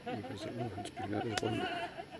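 A man laughing, a long wavering run of laughter, with a sharp click a little past halfway.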